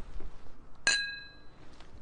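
A stemmed wine glass clinked once in a toast, a sharp strike a little under a second in that rings with a few clear glassy tones and dies away within a second.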